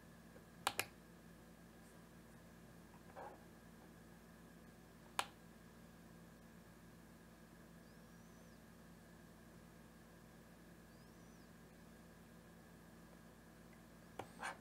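Near silence with a faint steady hum, broken by a few sharp computer-mouse clicks: a quick double click under a second in and a single click about five seconds in.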